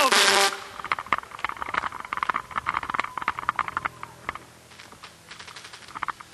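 Scattered clapping from a small audience after a band announcement, dense for the first few seconds and then thinning out to a few claps.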